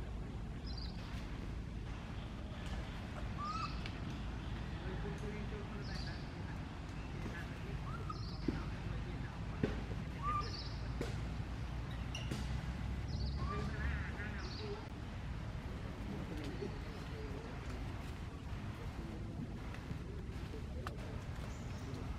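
Short, high-pitched rising chirping calls repeating every second or two, thinning out after the first two-thirds, over a steady low outdoor background with a few sharp clicks.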